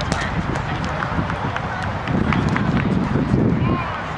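A roundnet rally: short sharp slaps of hands striking the ball and the ball hitting the net, a few in quick succession, over wind buffeting the microphone and background voices.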